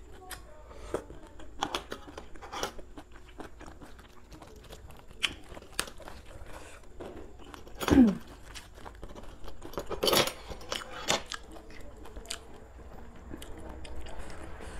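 Close-miked chewing and crunching of a mouthful of Thai pounded rice-noodle salad with prawns and raw greens: scattered wet clicks and crisp crunches, with a louder stretch of crunching about ten seconds in. About eight seconds in, a short mouth sound falling in pitch is the loudest moment.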